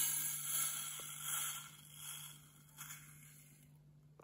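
Squishy-making powder poured from a small plastic scoop into the kit's clear plastic bottle: a soft hiss that fades away over the first two or three seconds.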